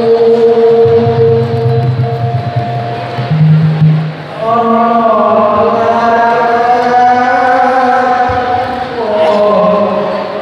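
A man sings a slow melody into a microphone, holding long notes and gliding from one pitch to the next. A low steady tone sits underneath for a few seconds near the start.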